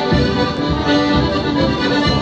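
Paolo Soprani piano accordion playing a melody over a bass beat that falls about twice a second.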